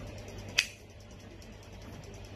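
A single short, sharp click about half a second in, over a low steady room hum.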